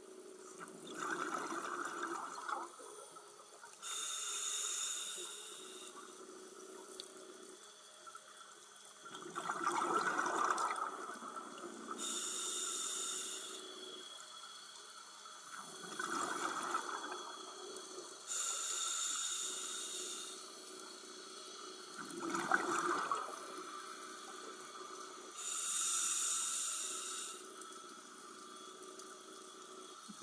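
Scuba regulator breathing heard underwater: a rushing gurgle of exhaled bubbles alternates with a high hiss of air drawn through the demand valve. There are four breath cycles, one about every six to seven seconds.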